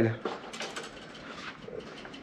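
Faint handling noise of a fishing rod being drawn out of a rod rack: light rubbing and a few small clicks of rods against one another, mostly in the first second.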